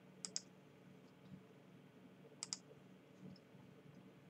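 Two computer mouse double-clicks, about two seconds apart, over a faint steady hum.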